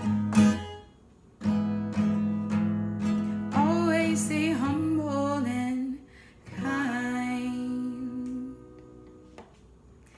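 The closing chords of a Yamaha acoustic guitar, strummed and left ringing, with a woman singing the last long-held lines over them. The final chord fades away near the end.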